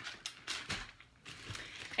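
Packaging being handled: rustling and crinkling, with a few light clicks and taps.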